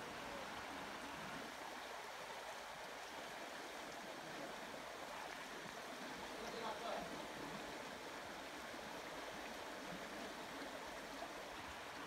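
Steady rush of a river flowing over and between boulders.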